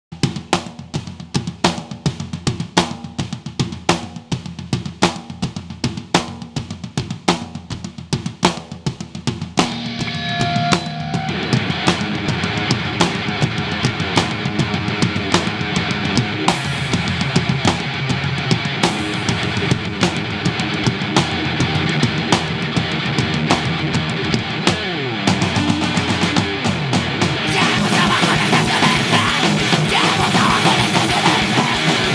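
Live heavy rock band: the drum kit plays a beat alone for about ten seconds, then guitars and bass come in and the full band plays loud and dense.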